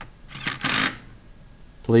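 Cordless power driver running briefly to spin a cap screw down into a cast pump manifold: one short burst about half a second in.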